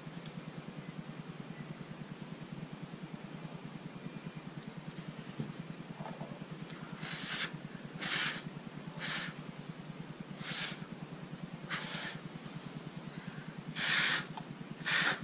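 A person blowing short, hard puffs of breath across wet acrylic paint to push it over a coaster in a Dutch pour. About five puffs, roughly one a second, begin about halfway in, over a steady low hum.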